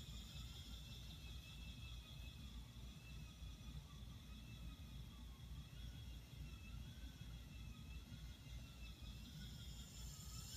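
Fricke S-160 spinning wheel being treadled while spinning yarn: a faint whir from the turning drive wheel and flyer, with a soft whine that rises and falls about every second and a half in step with the treadling.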